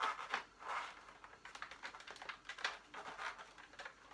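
Black Series electronic Darth Vader helmet, a hard plastic shell, being worked down over a head: faint, irregular scrapes, rubbing and small knocks of plastic against hair and skin.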